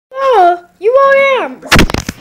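A high voice makes two drawn-out sung notes, the first sliding down, the second rising and then falling. A loud thump follows near the end, like the microphone being knocked or bumped.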